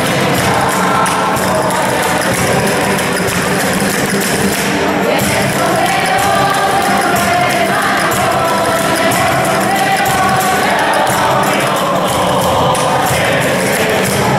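A congregation singing a religious song together, accompanied by strummed acoustic guitars.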